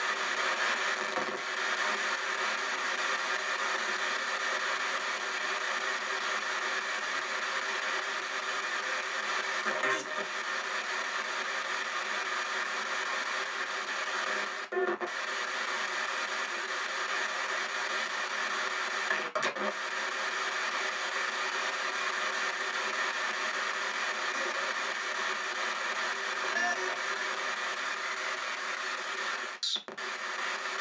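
P-SB7 spirit box sweeping radio stations in reverse sweep, played through stereo speakers: a steady rush of static with chopped fragments of broadcast voices. The sound briefly drops out about 15 and 19 seconds in.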